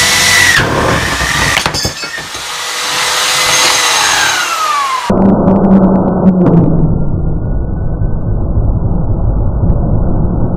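Bench grinder fitted with a cloth buffing wheel, running as an aluminium bracket is pressed against it to polish it. Its whine dips in pitch under the load. About five seconds in, the sound abruptly turns deep and muffled, a low steady hum.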